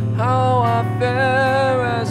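Stoner rock song: a steady low bass line under a sustained melody line whose notes bend slightly, coming in just after the start.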